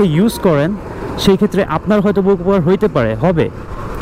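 A man talking continuously, with road and traffic noise from riding a motorcycle in city traffic underneath.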